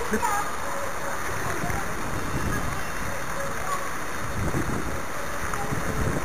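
Wind buffeting the camera microphone: a steady rushing noise with low, uneven rumbling.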